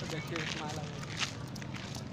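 Footsteps of a person walking, with a few light clicks, over a steady low hum and faint background voices.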